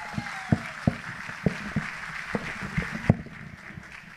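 Audience applauding, with some single sharp claps standing out, dying away about three seconds in.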